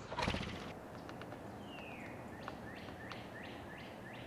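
Bird song: one longer falling whistle, then a run of short, sharply falling whistled notes repeated about three times a second, over faint outdoor background. A brief loud noise burst comes right at the start.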